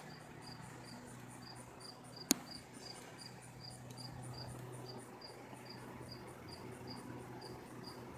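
A cricket chirping steadily and faintly, about three short high-pitched chirps a second. A single sharp click sounds a little over two seconds in.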